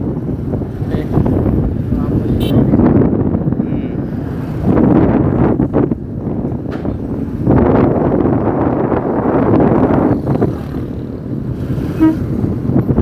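Motorcycle engine running while the bike is ridden, mixed with wind buffeting the microphone. The noise is loud and steady, with swells in level.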